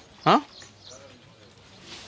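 A man's short, loud "ha?" with a quickly rising pitch, about a quarter second in. After it comes quiet outdoor background with faint bird chirps.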